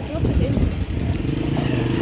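A small motor engine, like a motorcycle's, running close by. Its steady, fast chugging becomes clear about halfway through.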